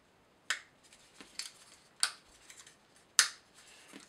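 Small plastic model parts clicking as a moulded chassis section of an OO gauge bogie bolster wagon is pressed and snapped back into the frame. Several sharp clicks, the loudest about three seconds in.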